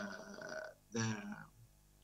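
A man's voice heard over a video-call link: a drawn-out hesitation 'uh' trailing off, then the single word 'the', then a pause.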